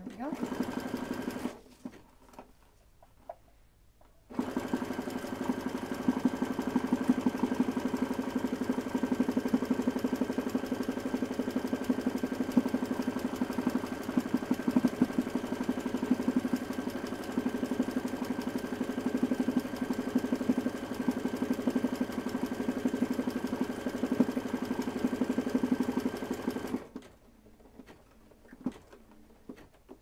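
Home sewing machine stitching free-motion embroidery, its motor humming steadily under dense rapid needle strokes. A short run at the start, a pause of a few seconds, then one long continuous run that stops near the end.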